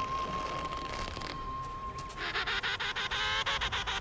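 Soft background music, joined about halfway through by emperor penguin calls: a loud, rapidly pulsing, honking call.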